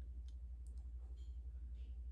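A few faint, short clicks over a steady low hum.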